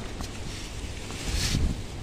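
Steady low rumbling noise, with a brief rustle about one and a half seconds in.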